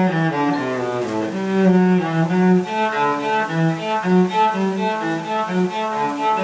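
Solo cello bowed, playing a steady stream of separate notes that move up and down without a break.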